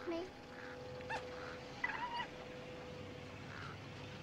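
A red fox on a leash giving two short, high whining yelps, one about a second in and one about two seconds in, over a faint steady tone.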